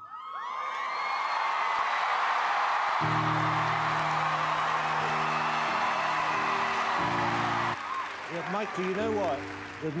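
Studio audience cheering and applauding, with whoops, just as a song ends. A swell of steady background music comes in about three seconds in. The cheering cuts off near the end as a man starts to speak.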